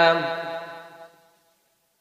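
A man reciting the Quran in a melodic chanting style, holding one long sustained note that tapers off and ends a little over a second in.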